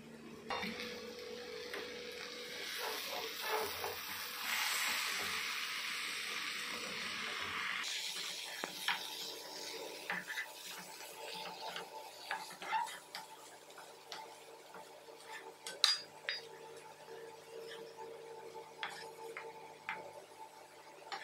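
A steady sizzling hiss for the first eight seconds, cutting off suddenly. Then a flat metal spatula scrapes and clinks against a kadhai while stirring and scooping fried cabbage and potato, with one sharp clink of metal on metal about sixteen seconds in.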